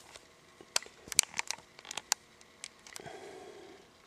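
Handling noise: a scatter of light, sharp clicks and ticks over about two seconds, then a faint rustle near the end.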